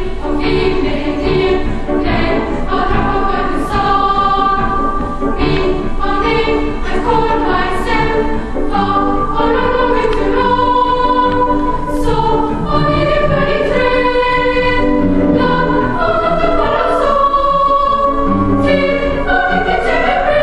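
Children's choir singing in harmony, with sustained notes in several parts.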